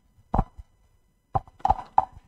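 Handheld microphone handling noise: a few short knocks and bumps, spread through the two seconds.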